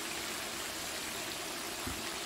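Chicken karahi cooking in a wok on the stove, giving a steady, even hiss. A faint low bump comes near the end.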